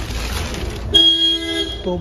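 A vehicle horn sounds once, a steady tone a little under a second long, starting about a second in. Before it there is a rustle, like plastic seat covers being brushed.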